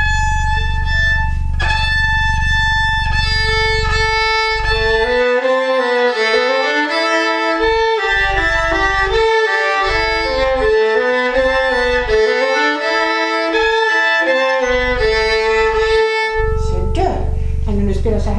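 Violin playing a flageolet: a natural harmonic made by lightly touching the string at its midpoint while bowing steadily near the bridge, held as a high, steady note an octave above the open string. From about four seconds a moving tune of lower notes joins it.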